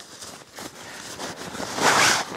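Ripstop nylon stuff sack being opened and a folded camp chair slid out of it: fabric rustling and scraping, with a loud swish of nylon near the end as the chair comes free.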